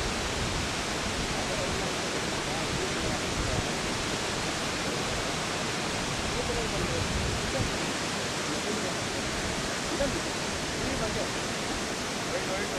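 Jog Falls' water plunging over a rock edge into its gorge: a steady rush of falling water and spray.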